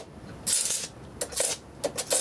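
Electric arcs drawn with a screwdriver tip from the winding of a home-made switch-mode power supply ferrite transformer: a half-second burst of crackling hiss about half a second in, then three brief crackles. These are low-voltage arcs with heavy current behind them.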